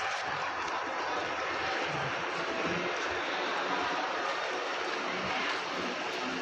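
Steady engine noise outside the airport terminal: an even, unbroken drone with a faint steady whine in it.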